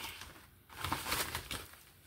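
Soft rustling and crinkling of a plastic mailer bag and a clear zip-lock bag as the contents are drawn out. It comes in two short spells with a near-quiet gap between them.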